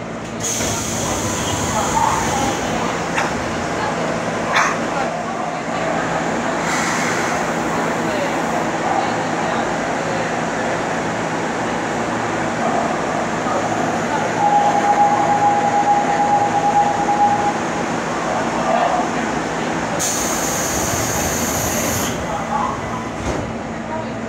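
Seoul Line 2 subway train standing at a station. Its equipment hums steadily, broken by three bursts of hissing, and a steady tone sounds for about three seconds in the middle.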